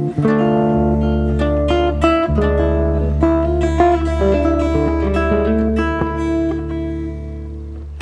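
Epiphone archtop hollow-body guitar played fingerstyle in a solo jazz-guitar arrangement: plucked melody notes and chords over held bass notes, growing somewhat softer near the end.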